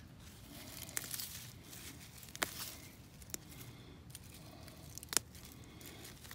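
A pokeweed being pulled up by hand from garden soil: faint tearing of roots and rustling of dry leaf litter, with a few sharp snaps scattered through.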